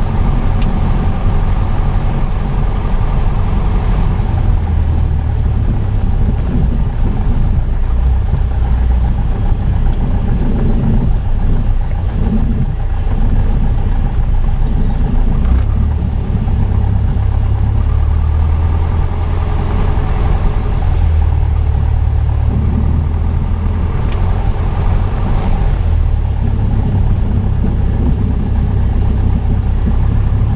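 Piper PA-28's piston engine and propeller running steadily at low taxi power, a continuous low drone heard from inside the cockpit with slight swells in level.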